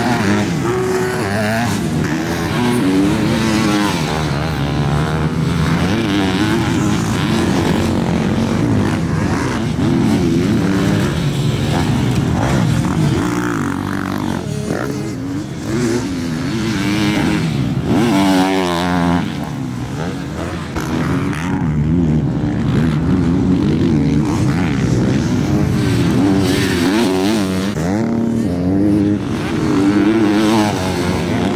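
Motocross dirt bikes ridden on a track, their engines revving up and down with the throttle through the turns, pitch rising and falling continuously.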